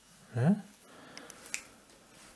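A single sharp click from a felt-tip marker pen being handled on a desk, with a couple of fainter ticks just before it, about a second and a half in.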